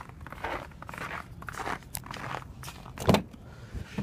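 Footsteps on snowy pavement with handling scuffs, then a loud sharp click about three seconds in as the Nissan Murano's driver door is unlatched and opened.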